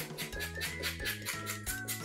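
Background music: held notes over a bass line, with a quick, even beat.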